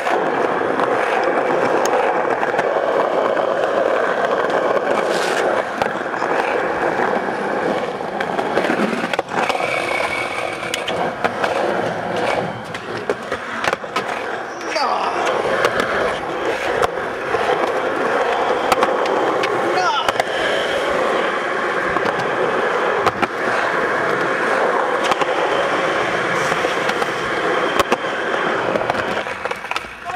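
Skateboard wheels rolling steadily over rough asphalt and concrete, with sharp clacks of boards hitting the ground scattered throughout as the skaters pop tricks and land them.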